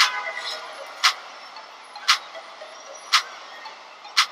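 Clock-like ticking from the opening of a music video played through computer speakers: one sharp tick about every second over a faint hiss.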